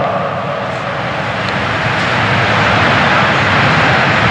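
A loud, steady rushing noise over a low hum, growing a little louder through the pause.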